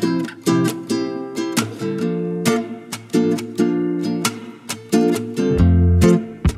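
Background music: an acoustic guitar picking a melody in quick plucked notes, with a deeper bass part coming in near the end.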